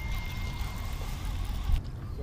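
Baitcasting reel being cranked as a small largemouth bass is reeled in to the bank, over a steady rumble of wind and handling noise on the microphone. A thin steady high whine runs through most of it and stops shortly before a single knock near the end.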